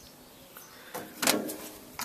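Rusty metal compressor parts being handled: a brief scrape and clatter about a second in, with a sharp click at the end.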